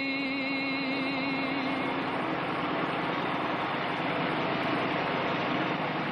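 A held musical tone fades out over the first two seconds, leaving a steady, even rushing noise with no rhythm or clear pitch.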